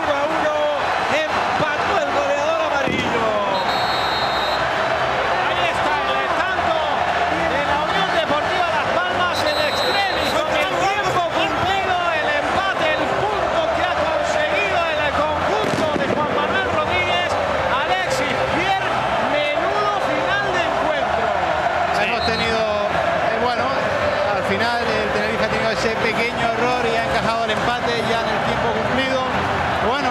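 Football stadium crowd cheering and singing, a steady wall of many voices at once, celebrating a last-minute equalising goal.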